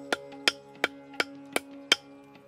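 Six sharp, evenly spaced knocks of wood on wood, about three a second, from a wooden fence post being worked into place, over background music.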